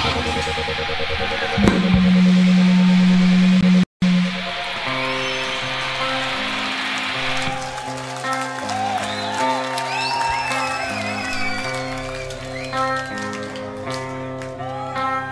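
Live stoner-rock band on stage: a loud held low note rings from about two seconds in and cuts off abruptly in a brief dropout near four seconds. Then a slow intro starts, with sustained low notes changing pitch every second or so and sliding, wavering high guitar lines above them.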